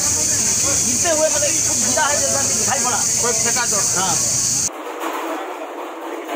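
A loud, steady high-pitched hiss with people talking under it, cutting off suddenly about four and a half seconds in; after that only quieter voices.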